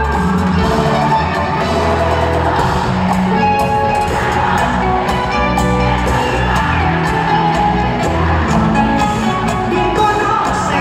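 Live band music played loudly through a concert sound system and heard from among the audience, running steadily without a break.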